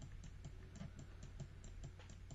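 Faint, rapid, irregular clicking from computer controls as an image is worked on, several clicks a second, over a low steady hum.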